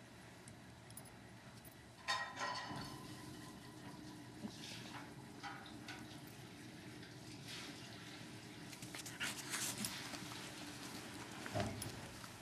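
Two small dogs at play: a short whine about two seconds in, then faint scuffling and pawing noises. A low steady drone runs underneath.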